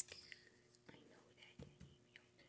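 Near silence with a few faint, soft ticks of trading cards being handled and shifted in a stack.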